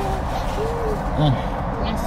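A few brief wordless voice sounds: short tones that rise and fall in pitch, the loudest about a second in. They sit over a steady background noise.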